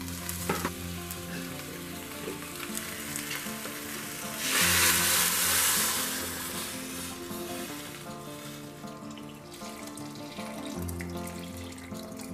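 Meat broth poured through a mesh strainer into a hot stew pot of browned meat and tomato sauce, sizzling in the pot. The pour is loudest as a rush of liquid from about four and a half seconds in, for about two seconds. Instrumental background music plays throughout.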